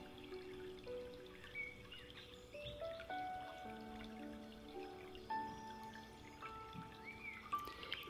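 Soft, slow background music of long held notes that step to a new pitch every second or so.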